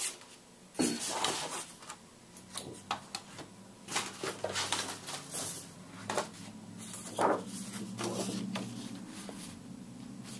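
Sheets of scrapbook paper and cardstock being picked up, shifted and laid down on a cutting mat: a string of irregular rustles and light flaps. A faint low hum comes in underneath about halfway through.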